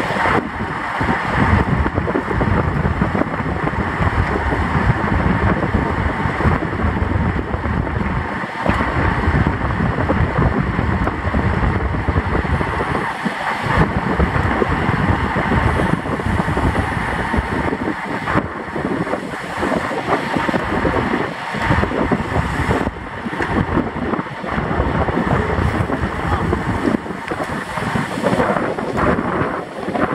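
Loud wind noise buffeting the microphone of a camera on a road bike moving at about 30 mph. It is a steady rush that wavers in gusts and dips briefly a few times.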